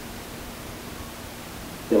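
Steady hiss with a faint low hum from the microphone and sound system during a pause in the talk; a man's voice comes back in at the very end.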